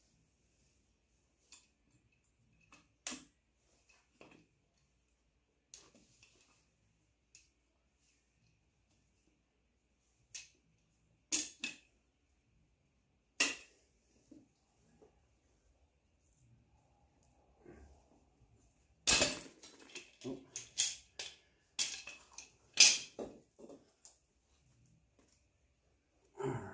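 Scattered clicks and metallic clacks as a homemade valve spring compressor, a socket welded onto a locking clamp, is worked on a Honda TRX200SX cylinder head to free the valve keepers. A quick run of sharp metal clatters comes in the last few seconds as the compressed valve spring and its parts come loose.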